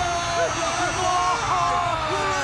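Men's voices singing together, a sung jingle with long held notes that slide up and down in pitch.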